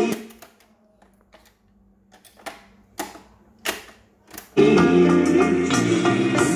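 Music from a Victor CDioss QW10 boombox stops abruptly. There are about seven sharp clicks and clunks from its cassette-deck keys and transport over a faint steady hum. The music resumes loudly about three-quarters of the way through.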